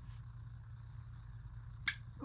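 Plastic paint squeeze bottle pressed by hand, sputtering near the end with one short, sharp spurt as it spits paint out onto the table. A low steady hum of room tone lies underneath.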